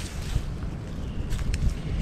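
Wind buffeting the microphone in a low, uneven rumble, with a few faint clicks about midway.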